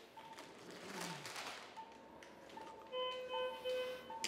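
Faint operating-room background with electronic beeps from the patient-monitoring equipment: a soft tone that comes and goes, then a louder, steady, overtone-rich beep in the last second.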